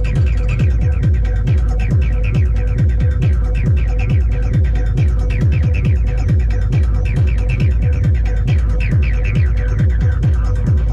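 Dark electronic dance track played live on hardware synthesizers and drum machines: a steady kick and bass beat about twice a second under a sustained drone, with short, falling synth blips recurring over the top.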